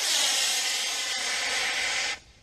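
Estes C6-3 black-powder model rocket motor burning at liftoff: a loud, steady hiss of exhaust that cuts off sharply about two seconds in at burnout.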